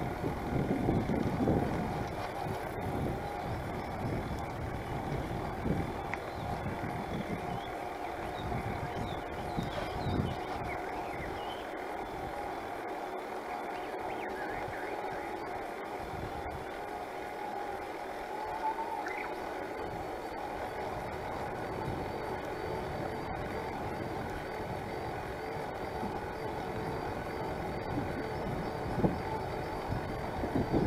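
Electric-assist bicycle riding along a paved road: steady wind and rolling noise on the microphone, with a faint high steady tone in the second half.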